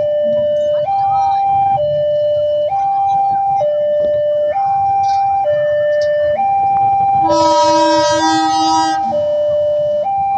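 Level-crossing electronic warning alarm sounding a steady high-low two-tone, the pitch switching about once a second, the signal that a train is approaching. About seven seconds in, a locomotive horn sounds one blast of nearly two seconds over it.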